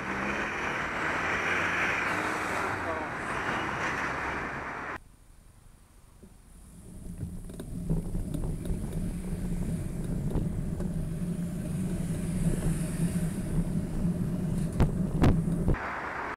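Wind rushing over a bicycle camera's microphone while riding, cutting off suddenly about five seconds in. After a quiet moment, a car engine idles close by with a steady low hum, with a few sharp clicks near the end.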